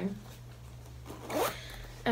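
Zipper on a small fabric project bag being pulled once, a quick zip that rises in pitch about a second and a half in.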